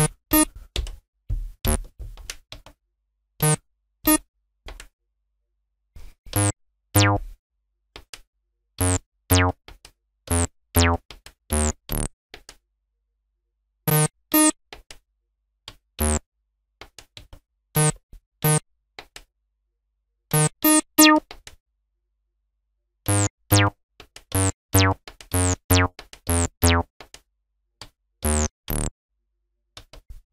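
Cyclone Analogic TT-303 Bass Bot bass synthesizer sounding short single notes one at a time as they are keyed into a pattern step by step. Each note has a bright start that dulls quickly. The notes come at uneven intervals with silent gaps between them, some in quick pairs and short runs.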